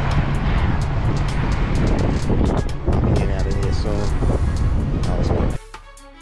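Semi-truck's diesel engine running, a steady rumble under loud outdoor noise, with a man's voice briefly in the middle. Near the end it cuts off suddenly and violin music begins.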